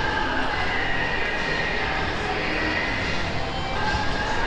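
Indoor shopping-mall ambience: a steady low rumble and hum of the large hall, with faint background music.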